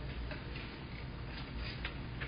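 Faint ticking over a low, steady room hum.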